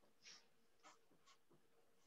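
Near silence: room tone with a faint steady hum and three faint, brief rustles.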